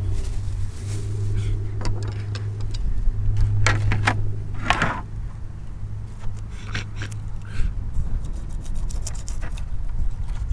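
A low steady engine hum that stops about eight seconds in, with a few short scrapes of a fillet knife cutting fish on a plastic cleaning board around the middle.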